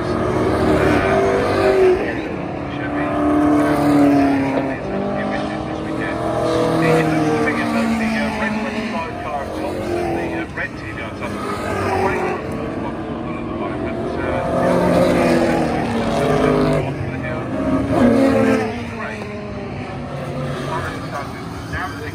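V8-engined race cars passing one after another through a corner, each engine note rising and falling as the car goes by.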